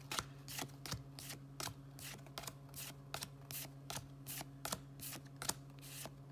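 Pokémon trading cards being flicked one at a time from the front of a pack to the back, each card giving a soft slap or click, about three a second. A faint steady low hum runs underneath.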